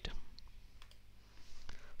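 A few faint clicks of a computer mouse, spread through the pause, over a low steady hum.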